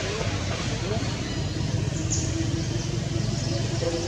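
A steady low rumble like a vehicle engine, with faint voices early on and a steady hum in the second half.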